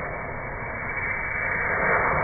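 Loose gunpowder stuffed into the fuse hole of a small brass .50 cal cannon, burning with a steady hiss that grows louder as it burns down toward the main charge.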